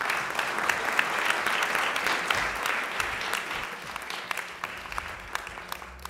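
Audience applauding, a dense patter of many hands clapping that thins out and fades near the end.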